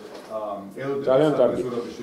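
Speech only: a man talking, louder from about a second in.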